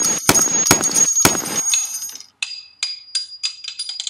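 Gunshot sound effects: four sharp shots in the first second and a half, each with a ringing tail. After a short gap, a run of light metallic clinks follows, coming closer and closer together.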